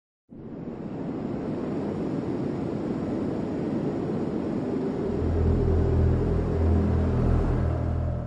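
Cinematic intro soundtrack: a rumbling wash of noise swells up gradually. Low, sustained drone notes join it about five seconds in.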